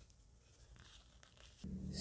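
Quiet room with a few faint light clicks and rustles as a piston-filling fountain pen is handled after being filled with ink.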